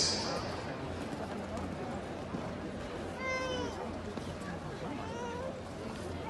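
Steady low arena background hum, with a short high-pitched voice call falling in pitch about three seconds in and more high-pitched, bending voice calls near the end.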